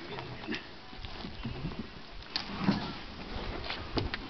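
Knocks and bumps of a small boat's hull being handled and lowered by hand, with the loudest bump a little past the middle.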